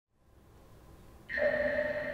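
Opening of the performance's backing music: a faint low rumble swells, then a held chord of several steady tones comes in suddenly about a second in.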